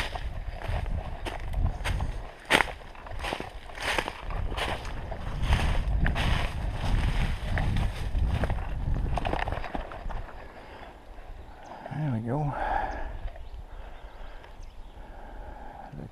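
A hiker's footsteps crunching through dry leaf litter and twigs at a walking pace, about one and a half steps a second, over a low rumble. The steps die away about ten seconds in.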